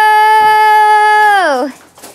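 A person's long drawn-out shout of "ohhh", held loud on one high, steady note and sliding down to stop about a second and a half in.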